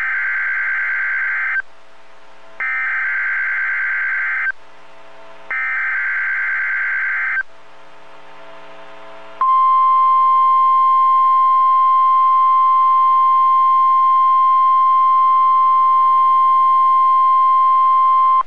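NOAA Weather Radio Emergency Alert System tones. Three buzzy bursts of SAME digital header data, each about two seconds long with a second's gap between them, are followed about nine seconds in by the steady 1050 Hz warning alarm tone. Together they announce a test tornado warning.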